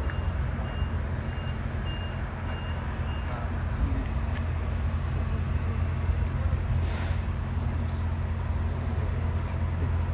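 Steady low rumble of a jet airliner climbing away after take-off. For the first three seconds a reversing beeper sounds about twice a second over it.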